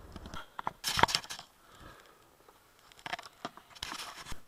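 Handling noise of a small handheld camera: clicks, knocks and rubbing against the microphone. The loudest bunch comes about a second in, then quieter scraping, and a second cluster of clicks near the end.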